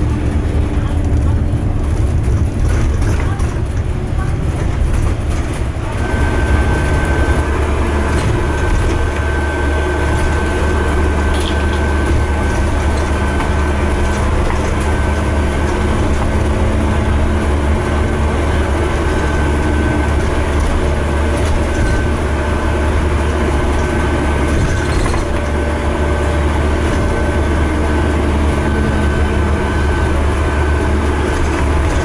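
Interior sound of a moving Stagecoach bus: a steady, loud low engine drone with road and body noise. About six seconds in, a thin, steady high whine joins it and carries on with short breaks.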